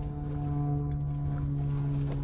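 A car horn held down in one long, steady, unbroken blast.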